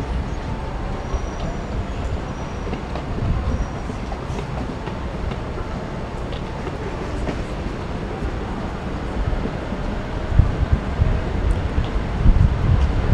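Steady low rumble of city street traffic, with low thumps of wind buffeting the microphone in the last couple of seconds.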